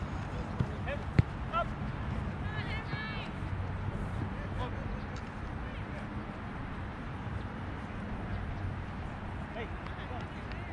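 Open-air soccer field with faint, scattered high-pitched voices of young players and people on the sidelines. A single sharp thump of a soccer ball being struck about a second in is the loudest sound.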